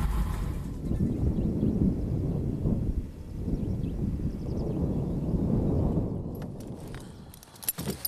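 Low rumble of a Duo Discus glider's landing gear rolling over a grass airfield after touchdown, dying away as the glider rolls to a stop. A few light clicks follow just before the end.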